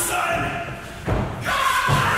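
A thud on the wrestling ring about a second in, followed by a man yelling.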